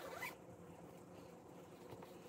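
A quick zip-like swish, about a third of a second long, as a baby's footed sleeper is handled. After it there is only quiet room tone with a faint hum.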